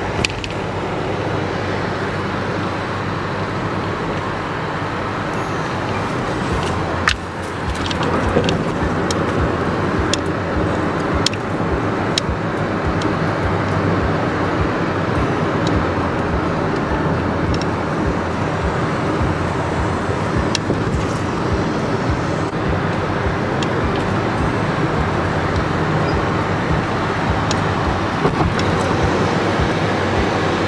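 Steady road and engine noise heard from inside a moving vehicle's cabin at highway speed, with a few short sharp clicks or rattles over it.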